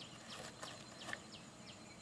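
Faint, repeated high chirps from a small bird, each sliding down in pitch, about three a second, with a soft scrape about a second in.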